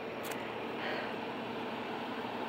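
Steady low background hiss with a faint steady hum, broken once by a brief click about a quarter second in.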